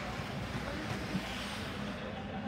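Steady background hum and noise of an indoor ice rink, with faint, distant voices.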